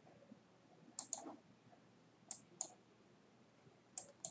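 Computer mouse button clicks: two pairs of quick, sharp clicks, about one second and two and a half seconds in, with a faint room hush between.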